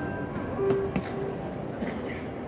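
Grand piano being played, single notes sounding and ringing on, with voices of people nearby underneath.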